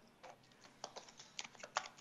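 Tarot cards being shuffled by hand: a scatter of faint, irregular clicks and flicks as the cards slide and tap against each other, coming thicker in the second half.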